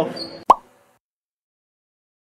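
A single short cartoon-style "plop" pop sound effect about half a second in, a sharp click with a quick upward-sweeping blip, followed by dead digital silence.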